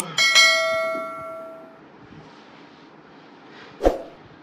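A mouse-click sound effect, then a bright bell-like chime that rings out and fades over about a second and a half: the sound of a subscribe-and-notification-bell overlay. A single sharp click or knock comes just before the end.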